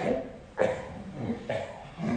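Kids' voices in a pillow fight, slowed down for a slow-motion replay so they come out low and drawn out: three long vocal sounds, at the start, about half a second in and about a second and a half in.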